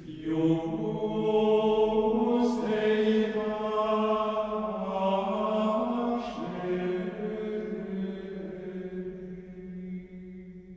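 Background music: slow religious vocal chant, long held sung notes that move in pitch every second or two, with a few sibilant consonants.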